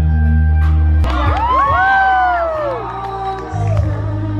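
A live band playing, with high rising-and-falling whoops and cheers from the audience over the music between about one and three seconds in.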